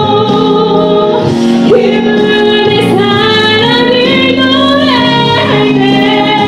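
A woman singing a solo into a handheld microphone, holding long notes and sliding up between pitches, over a sustained accompaniment.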